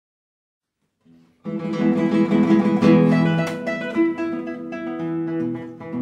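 A quartet of classical guitars playing a lively zapateado, starting together about a second and a half in after silence, with sharp chord attacks over plucked melody and bass notes.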